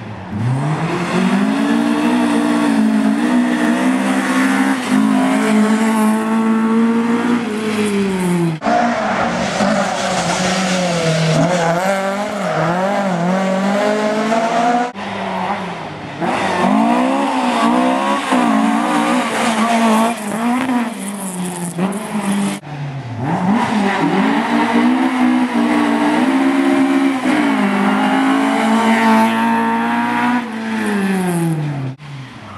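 Rally car engines revving hard, the pitch climbing and dropping back with each gear change, in four short segments that break off suddenly roughly every seven seconds.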